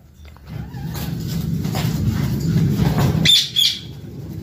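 Pet birds chirping, with two sharp high squawks about three seconds in, over a steady low rustling of close handling as a white pigeon is grabbed by hand.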